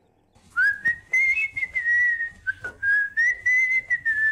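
A whistled tune: one clear high note that starts about half a second in, wavers up and down in pitch and holds on with short breaks, over light clicks.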